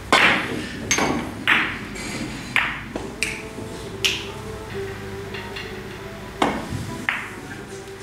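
Three-cushion carom billiards shot: the cue strikes the cue ball with a sharp click, followed by a series of ringing clicks over the next four seconds as the balls hit each other and the cushions. Two more clicks come near the end.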